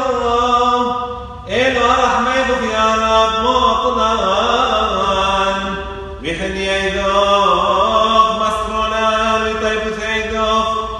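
Syriac Orthodox liturgical chant of the Passion Week service: voices sing long, ornamented notes in unbroken phrases, with fresh phrases beginning about one and a half seconds and six seconds in.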